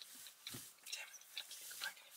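Faint, quiet murmuring voice with a few small clicks inside a car.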